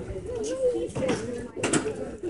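Indistinct voices of people in an outdoor market crowd, with a short rattling clatter about three-quarters of the way through.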